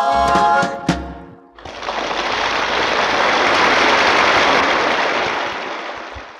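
The last held chord of a sung pop number ends about a second and a half in. Audience applause follows, rising and then fading out over about five seconds, played from a mono vinyl record.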